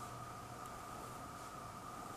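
Faint scratching of a Dong-A Zero fine-tip pen drawing short lines on sketchbook paper, two light strokes about half a second and a second and a half in, over a steady hiss and hum.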